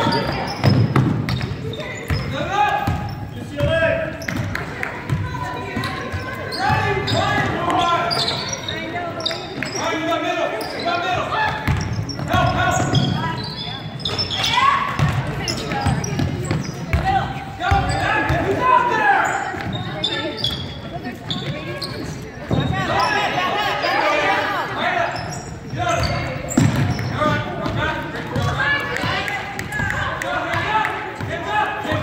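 Basketball dribbling on a hardwood gym floor, with the voices of players, coaches and spectators throughout, all echoing in the large gym.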